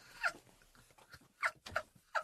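Stifled, high-pitched laughter: several short squeals, each falling in pitch, with quiet gaps between them.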